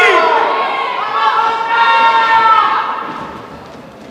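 Shouting voices in a lucha libre crowd in a large hall: two long, drawn-out calls, the second a little over a second in, then dying down toward the end.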